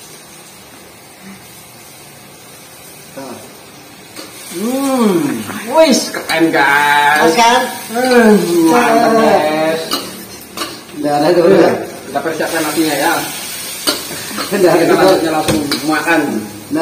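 Water spinach and tempeh sizzling in a wok, with a metal spatula stirring and clinking against it. From about four seconds in, a man makes loud, drawn-out wordless vocal sounds whose pitch swoops up and down, in several runs.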